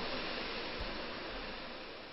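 Closed-cell spray foam gun hissing steadily as it sprays polyurethane foam into a stud bay, slowly fading out.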